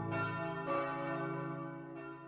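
A deep bell struck twice, the second stroke about half a second after the first, each left ringing and slowly fading.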